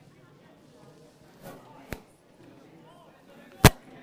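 Low outdoor background with two sharp knocks: a faint one about two seconds in and a loud, very short smack a little after three and a half seconds.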